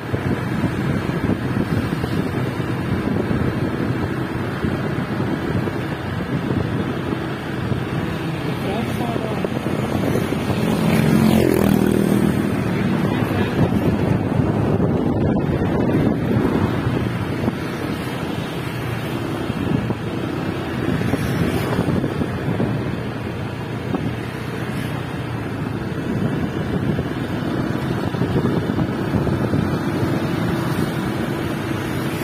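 Wind rushing on the microphone over the running engine of a moving motor scooter, with a louder swell about eleven seconds in.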